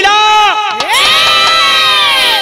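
A male birha singer's voice holding long, high drawn-out notes: a short first held note, then a second that slides up and is held steady for more than a second.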